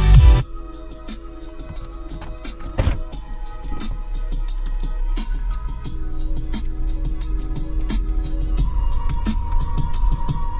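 Lo-fi chill music playing through the 2006 Toyota 4Runner's six-speaker factory stereo, heard inside the cabin; it comes in quietly and slowly grows louder. Just at the start, a louder electronic track cuts off abruptly, and there is a single sharp knock about three seconds in.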